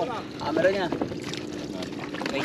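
A brief voiced call about half a second in, over a low, steady background of wind on the microphone and water.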